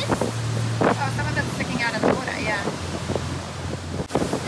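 Motorboat engine running with a steady low drone while the boat is underway, with wind buffeting the microphone in gusts.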